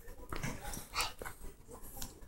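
A poodle panting and sniffing softly close to the microphone: a string of short breathy puffs, a slightly louder one about a second in.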